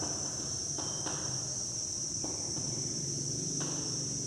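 Chalk tapping and scratching on a blackboard as script is written, a few faint strokes. Under it runs a steady high-pitched drone, the loudest sound, with a low hum.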